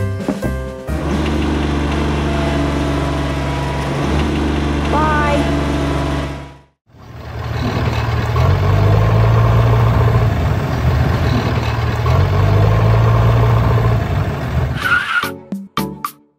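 Tractor engine running steadily. It cuts out briefly about six and a half seconds in, then runs again and revs up twice.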